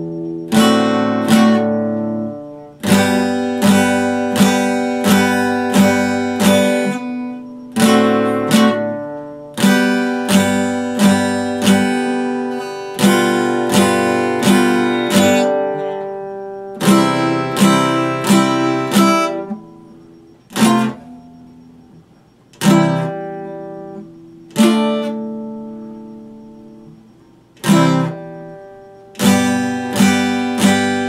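Epiphone acoustic guitar being strummed, chords struck in quick groups of sharp strokes. In the second half a few chords are left to ring out and fade before the strumming picks up again.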